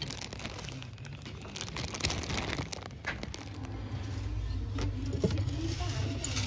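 Handling noise as items on a shop shelf are picked up: rustling of plastic packaging with many light clicks and rattles, over a low steady hum.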